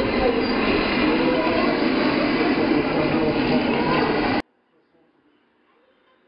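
Loud, steady rumbling room noise with people's voices mixed in, cutting off abruptly about four and a half seconds in. It is followed by faint background murmur.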